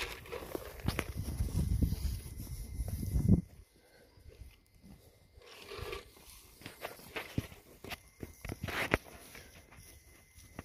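Low rumbling noise on the phone's microphone for the first three seconds or so, then quieter footsteps swishing through long grass and weeds, with scattered small clicks.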